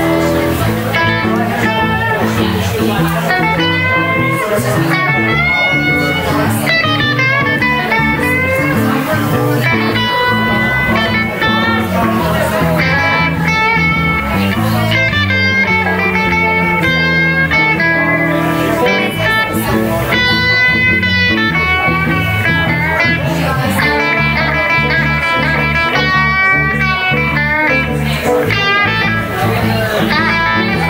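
Live electric blues band playing an instrumental break: an electric guitar plays a lead solo full of bent notes over a second electric guitar and electric bass.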